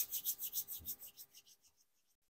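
Quick, even rubbing strokes, about six or seven a second, that fade away near the end.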